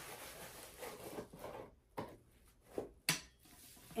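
Packaging rustling as a stainless steel tumbler is worked out of it, then three sharp clicks and knocks in the second half as the tumbler is handled.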